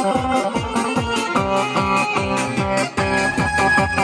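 Live Balkan folk dance music for a kolo, played on an electronic keyboard over a fast, steady drum beat and amplified through loudspeakers.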